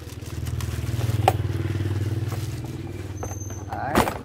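A low engine hum swells over the first second and then slowly fades, like a motor vehicle going by. A sharp click a little over a second in and a knock near the end come from the hammer drill being handled in its plastic carry case.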